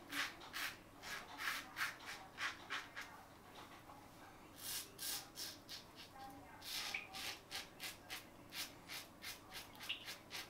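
Fatip Piccolo open-comb safety razor with a Gillette Red Stainless blade scraping stubble through lather on the neck in short strokes, about three or four a second. The strokes pause for a second or so in the middle, then start again.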